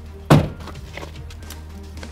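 A single heavy thunk of a car door being shut, about a third of a second in, over steady background music.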